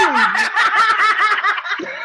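Several people laughing loudly together in quick bursts, opening with one voice sliding down in pitch.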